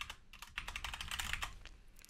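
Computer keyboard typing: a quick run of faint keystrokes.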